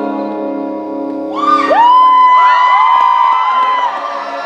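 Several men singing a cappella in close harmony, holding a sustained chord. About a second in, high-pitched whoops and screams from an audience slide in over it and are held almost to the end.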